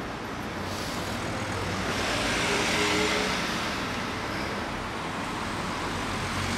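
Street traffic noise: a motor vehicle passing, its engine and tyre noise swelling to its loudest about halfway through and then easing off over a steady low hum of traffic.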